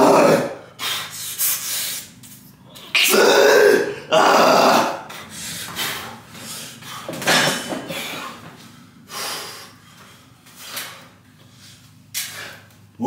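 A man's loud strained grunts and forceful breaths during the last reps of heavy dumbbell hammer curls. These are followed by a few more hard exhalations, spaced a second or two apart, as he recovers.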